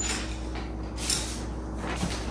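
Light paper rustling as a greeting card is handled and opened, with a brief brighter rustle about a second in, over a faint steady hum.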